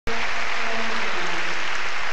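Arena crowd applauding steadily, with a few faint held tones underneath.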